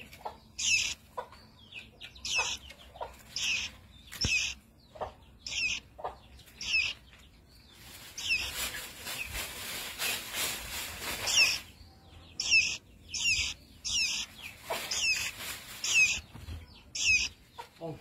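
A fledgling songbird calling: more than a dozen short, high chirps that sweep downward, in two runs. A rush of hiss lasts about four seconds in the middle.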